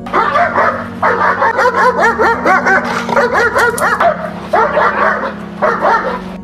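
German Shepherd on a leash barking rapidly and continuously at a decoy during fear-agitation protection training. The barks are high and yelping, several a second, with two brief breaks.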